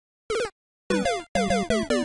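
Choppy comic sound effect: a string of short electronic tones that stutter on and off, each cut off sharply, with falling pitch sweeps above a steady low note.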